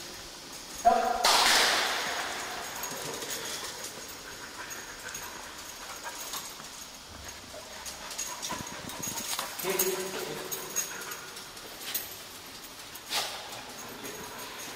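A sniffer dog whimpering while it searches. About a second in there is a loud sudden burst that fades over about a second. There is a short whine near ten seconds and a sharp knock near the end.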